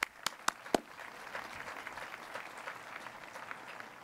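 Crowd applauding, with four loud, close hand claps at the microphone in the first second and then a steady spread of many claps from further off.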